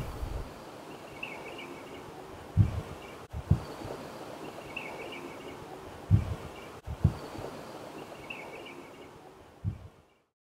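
A short stretch of outdoor-sounding ambience repeats about every three and a half seconds: faint high chirps, then two soft low thumps each time, over a steady hiss.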